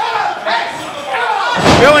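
A heavy slam on a wrestling ring's canvas and boards, once, about one and a half seconds in, over voices.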